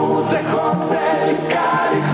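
Several men singing together into microphones, over music.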